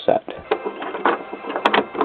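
Plastic Lego pieces clicking and tapping irregularly as the model is handled close to the microphone.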